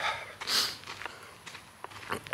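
A short, sharp breath through the nose close to the microphone about half a second in, followed by a few faint clicks near the end.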